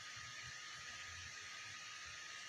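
Quiet room tone: a steady background hiss with a faint, steady high tone.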